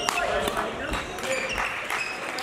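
Sports-hall badminton sounds: sharp, irregular clicks of rackets striking shuttlecocks on the courts, over a background of voices in the hall.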